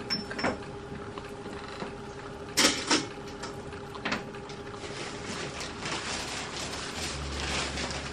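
Scattered knocks and rustles of things being handled, the loudest a sharp knock a little before three seconds in, over a faint steady hum.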